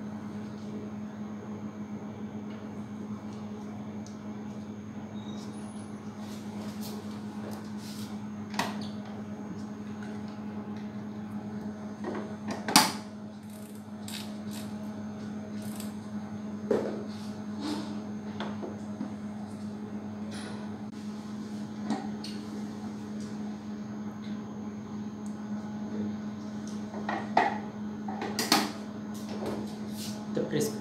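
Scattered clicks and knocks from handling a benchtop microcentrifuge as tubes of lysate are loaded into it and the lid is closed; the sharpest knock comes a little before the middle. A steady low hum runs underneath.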